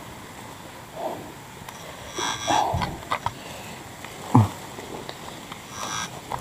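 Footsteps scuffing and sliding on a steep muddy forest trail, with brushing against vegetation and a dull thud around the middle, and a short grunt of effort about four seconds in.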